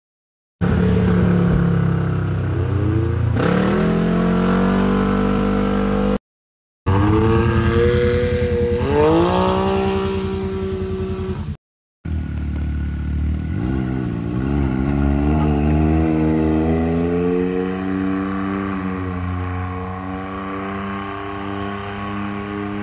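2019 Can-Am Maverick X3 side-by-side's turbocharged three-cylinder engine running and accelerating, its pitch climbing in sweeps as it revs up, with one quick drop and climb again partway through. The sound is heard across three short takes with abrupt cuts between them.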